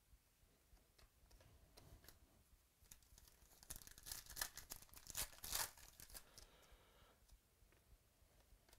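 Trading cards being handled and slid against one another, a dry rustle and flurry of light clicks that grows loudest around four to six seconds in.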